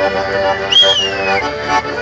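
Accordion playing traditional Ciociaria folk dance music. About three quarters of a second in, a loud whistle rises briefly, then slides down in pitch.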